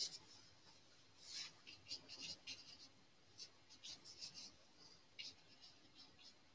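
Faint, short scratchy strokes of a thin paintbrush's bristles dragged across the oil-painted canvas, about eight of them at an uneven pace with pauses between.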